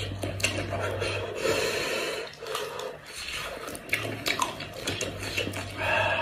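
Close-up wet squelching, tearing and small clicks as cooked sheep-head meat is pulled apart by hand, mixed with chewing and mouth sounds.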